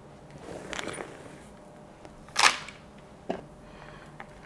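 Hands loosening a root-bound philodendron's root ball in a chunky coco-chip and pumice mix: faint rustling of soil and roots, then one sharp crackle about two and a half seconds in and a small click near the end.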